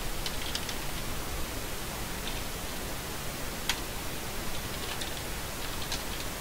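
Steady hiss of background noise with a few scattered computer keyboard key clicks as commands are typed, one sharper click a little past the middle.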